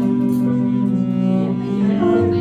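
Live cello and electric keyboard duo playing. The bowed cello holds one long sustained note, moving to a new note at the very end.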